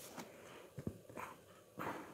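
Tarot cards being handled as a card is drawn from the deck: a few short rustles and slides of card stock, with a soft knock just before a second in and the loudest card rustle near the end.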